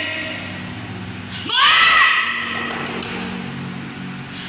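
A loud shouted exclamation, rising sharply in pitch and held about half a second, about a second and a half in, over low sustained keyboard notes.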